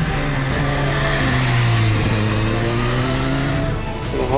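Suzuki Katana's GSX-R1000 K5-derived inline-four engine pulling the bike through a corner. The engine note dips about halfway through and climbs again, and cuts off just before the end.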